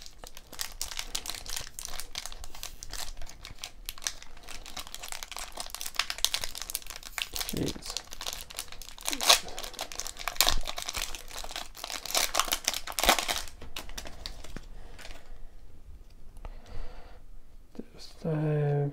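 Wrapper of a 1992 Donruss baseball card pack crinkling and tearing as it is pulled open by hand, a dense run of sharp crackles that grows quieter over the last few seconds.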